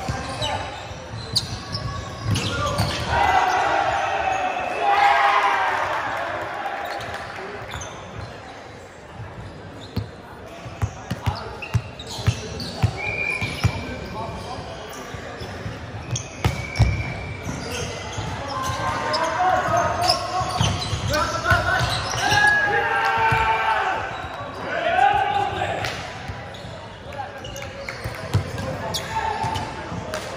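Volleyball rally on a hardwood indoor court: sharp slaps of the ball being served, passed and hit, with the loudest smack about seventeen seconds in, amid players shouting calls to each other.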